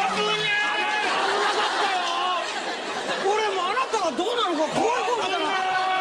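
Speech only: people talking over one another in lively chatter.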